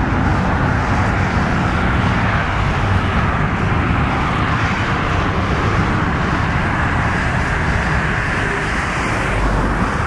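Steady freeway traffic noise, an even wash of passing vehicles with no single event standing out.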